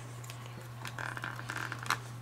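Faint handling of a plastic ink pad case and a foam ink blending tool, with one sharp click near the end, over a steady low hum.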